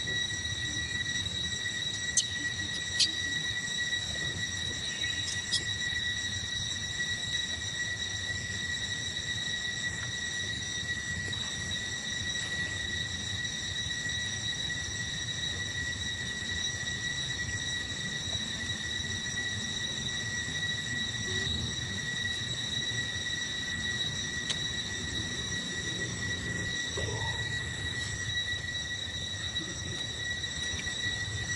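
Steady high-pitched insect drone holding one unchanging pitch, over low outdoor background rumble, with a few sharp clicks a few seconds in.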